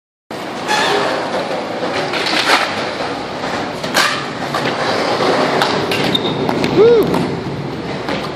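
Skateboard wheels rolling over a concrete bowl, a steady rough rumble with a few sharp clacks of the board.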